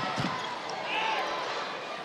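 Volleyball rally in an arena: steady crowd noise with the ball being struck.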